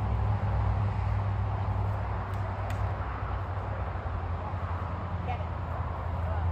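Steady low rumble with an even hiss over it, outdoor background noise.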